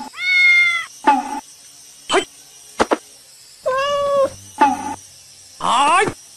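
Domestic cat meowing repeatedly: about five short calls with quiet gaps between them, some arching and some rising steeply in pitch. There is a sharp click near the middle.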